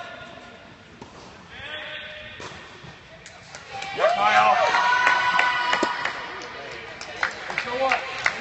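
Spectators at an indoor tennis match shouting and cheering. A long, loud yell comes about halfway through, followed near the end by a few sharp knocks.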